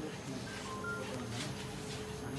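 Mobile phone keypad beeps: three short tones at different pitches in the first second, over faint background voices.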